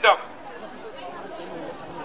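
A man's voice through a microphone and loudspeaker finishes a phrase just after the start, then a pause with only faint background voices.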